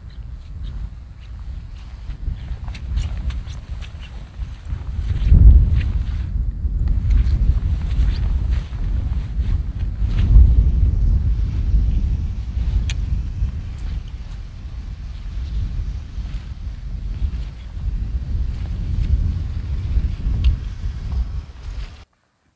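Strong gusty wind buffeting the microphone: a loud low rumble that swells sharply about five and a half and ten seconds in, with faint scattered ticks over it.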